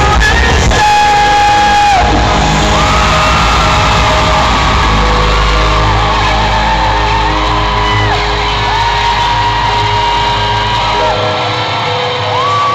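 Live pop-rock band playing loudly through an arena PA, held guitar chords over drums and bass, with fans screaming and whooping close by. The deep bass drops out about a second before the end.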